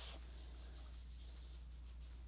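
Faint rubbing of a pre-soaked exfoliating peel pad wiped across facial skin, a soft scratchy swishing.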